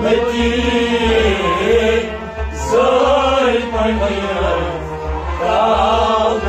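Male voice singing a Kashmiri Sufi song in long, wavering phrases, accompanied by a harmonium's sustained reed chords. A low pulsing beat runs underneath.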